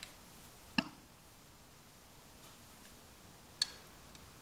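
Two short, light clicks, about three seconds apart, as a plastic oil bottle is handled and set down beside a rotary vane vacuum pump after topping up its oil. Quiet room between them.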